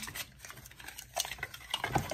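Light rustling and scattered small clicks of a cardboard product box being handled and a small eye-cream jar being taken out of it.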